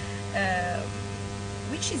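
Steady electrical mains hum with a stack of evenly spaced overtones on the recording, and a short vocal sound about half a second in.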